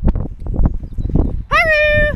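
Wind buffeting the microphone with scattered knocks, then a loud, high-pitched, steady call starting about a second and a half in, rising briefly at its onset.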